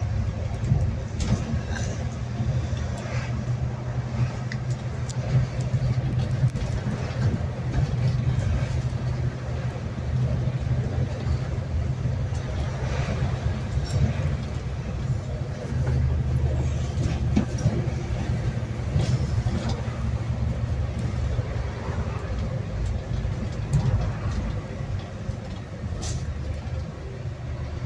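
Bus engine running as the bus drives along, heard inside the passenger cabin as a steady low drone with small rattles and clicks. A deeper engine note comes in for several seconds a little past the middle.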